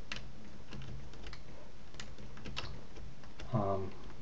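Scattered clicks of a computer keyboard and mouse, about ten irregular taps, as polygons are deselected in a 3D modelling program. A brief vocal sound comes near the end.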